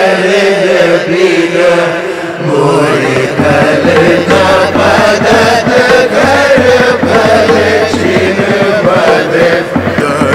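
Music: an Indian ragamala sung by layered voices in a chant-like style. About three seconds in, a low steady drone and rapid percussion come in beneath the singing.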